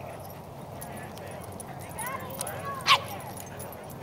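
Two dogs, an Australian shepherd and a boxer, at rough play; one gives a single short, sharp bark about three seconds in.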